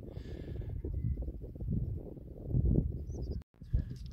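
Wind buffeting the microphone in uneven gusts, with a short dropout to silence near the end.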